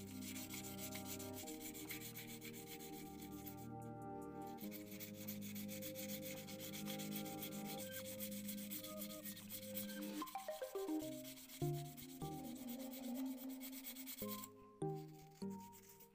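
Fine 1000-grit wet sandpaper rubbing over a coated balsa lure body in steady strokes, pausing briefly about four seconds in and stopping near the end. Background music of held chords plays underneath.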